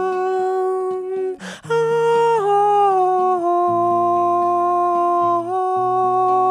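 Male singer humming a wordless melody in long held notes, with a short break about a second and a half in, the pitch stepping down twice and rising again near the end, over guitar accompaniment.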